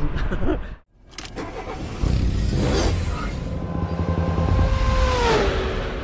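Logo-intro sound effect of a car engine: a low rumble starting up about two seconds in, then a steady rev whose pitch slides down about five seconds in.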